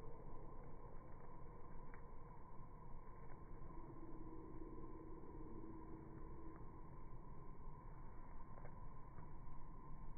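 Faint, dull outdoor background noise with a few soft ticks scattered through it, and a faint low hum from about four to seven seconds in.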